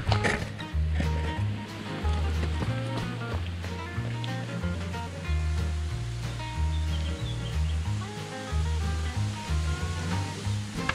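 Background music: a bass line of short held notes that change about once a second, with lighter melody notes above.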